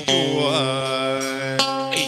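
Vietnamese funeral band music (nhạc hiếu) accompanying a sung lament: a held, wavering melodic line over a steady low drone, moving to a new note near the end.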